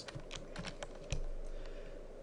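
Computer keyboard typing: a quick run of key presses, mostly in the first second, with a dull thump about a second in.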